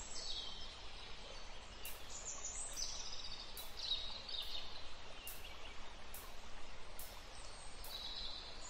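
Birds chirping in short, high, falling phrases over a quiet, steady outdoor hiss, with a faint high tick repeating a little more than once a second.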